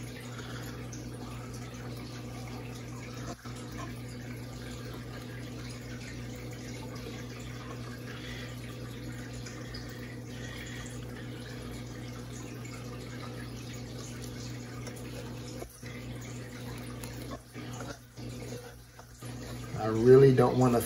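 Steady low hum of room noise, with faint wet scraping of a metal palette knife spreading thick white acrylic base paint across a canvas.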